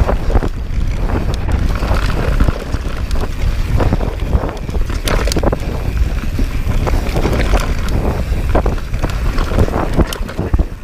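Wind buffeting an action camera's microphone on a mountain bike descending at speed. Tyres rumble over a rough dirt trail, and the bike rattles and knocks repeatedly over bumps.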